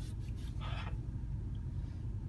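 Steady low rumble inside a car cabin, with a short breathy sound from the man about half a second in.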